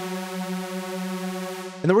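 Arturia MiniFreak V software synthesizer playing a detuned supersaw lead through a low-pass filter: one held note at a steady pitch that stops abruptly near the end, followed by a man's voice.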